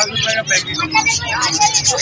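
Busy street-market ambience: people talking over a low traffic rumble, with the cellophane wrap of a pack of glass tumblers crinkling as it is handled.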